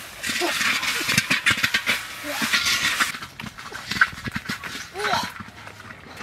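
Grass and leaves rustling as someone pushes through tall vegetation, loudest over the first three seconds, with a few short voice-like calls in between, one near the end.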